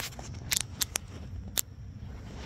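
A few short, sharp clicks, bunched about half a second to one second in with one more near the end, over a steady low rumble.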